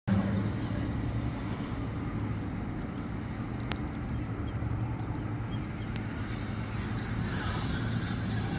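Steady outdoor background noise with a low, even hum, of the kind street traffic makes, and two faint clicks about four and six seconds in.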